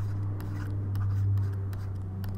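Stylus scratching and tapping on a pen tablet as handwriting is drawn, with faint light clicks, over a steady low electrical hum.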